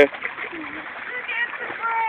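Light pool-water sloshing and faint voices, with one drawn-out, slightly falling vocal note near the end.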